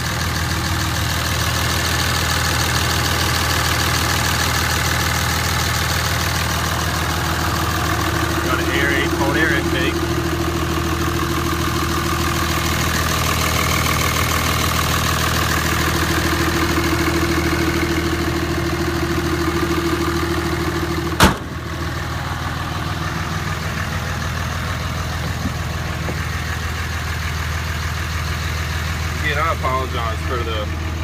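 2007 Dodge Ram 2500's 5.9-liter Cummins inline-six turbodiesel idling steadily, with one sharp bang about two-thirds of the way in.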